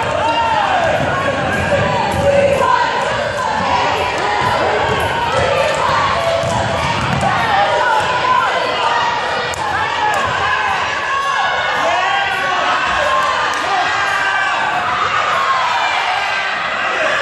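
Sounds of a youth basketball game in a gymnasium: a basketball bouncing on the hardwood court under many overlapping voices of players, coaches and spectators calling out.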